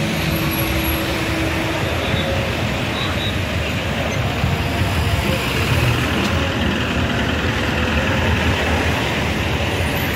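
Steady street traffic noise from cars and a truck moving slowly in dense traffic, even throughout with no single event standing out.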